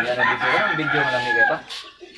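A rooster crowing once, one long call lasting about a second and a half that arches slightly and falls away at the end, with a man's drawn-out hesitant 'uh' underneath.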